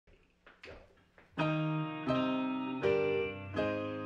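Electric keyboard playing a slow intro of sustained piano chords, struck about every three-quarters of a second and beginning about a second and a half in, after a few faint knocks.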